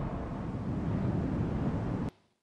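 Low, pitchless rumbling noise, heavier in the bass, holding fairly steady and then cutting off abruptly just after the end.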